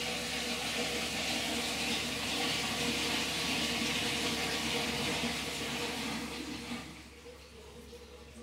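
Water running with a steady rushing hiss that dies away about seven seconds in.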